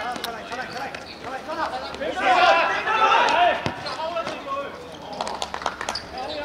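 Men shouting during play, with sharp thuds of a football being kicked: one heavy kick about two-thirds of the way through and a quick run of knocks near the end.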